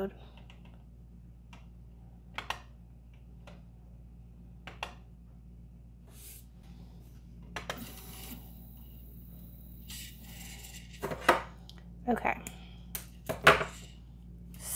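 Scattered clicks of the Prusa MK3S+ LCD control knob being turned and pressed through the menus. About halfway through there is a few seconds of steady high whirring as the extruder unloads the filament, then several louder clicks near the end.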